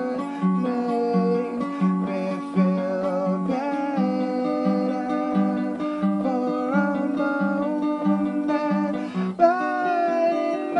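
Acoustic guitar playing a song with a steady rhythm, a low note repeating evenly under sustained higher notes that shift as the chords change.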